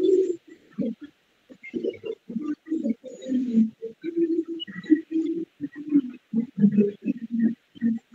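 Muffled, dull-sounding speech from a person talking over a video call, heard in short syllable-like bursts throughout.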